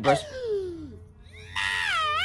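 A cartoon Mickey Mouse–style character's voice screaming, high-pitched and wavering, starting about one and a half seconds in. Before it, a shorter cry slides down in pitch.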